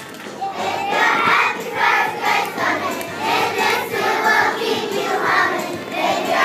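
A kindergarten class of about six-year-olds singing a song together in unison, phrase by phrase in a steady rhythm, the many young voices starting just after a brief pause.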